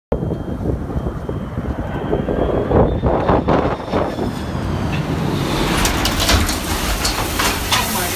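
A large jet air tanker passing low overhead, its engines a loud, steady rumble with a thin high whine. About five and a half seconds in, a rushing, crackling hiss builds as the dropped load of pink fire retardant rains down and spatters onto the house and yard.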